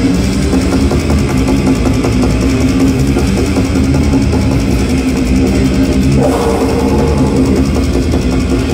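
A death metal band playing live through a PA: heavily distorted guitars and a drum kit, loud and continuous, with a higher line coming in about six seconds in.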